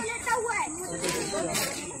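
People talking, softer than just before, over a steady high-pitched hiss.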